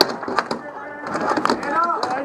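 Dek hockey sticks and plastic ball clacking sharply several times during a battle for the ball, with voices calling out over the play.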